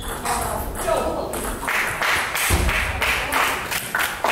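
Table tennis balls clicking on tables and bats in scattered taps. There is a low thud about two and a half seconds in.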